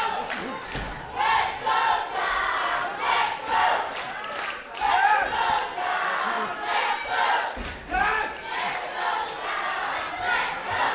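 Wrestling crowd shouting together in short, repeated bursts with a chant-like rhythm, many voices at once.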